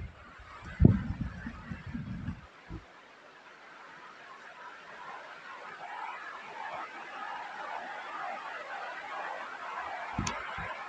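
Outdoor ambience in a mountain valley: wind buffeting the microphone in low gusts for the first couple of seconds, then a steady rushing hiss of wind and water that grows slightly louder.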